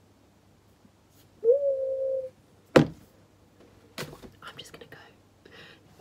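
A woman's short hummed "mmm", held on one pitch for under a second, then a single sharp knock about a second later, followed by faint whispering and small clicks.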